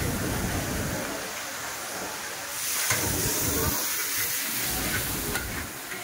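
Char kuey teow sizzling in a large wok as it is stir-fried: a steady hiss that comes up about halfway through.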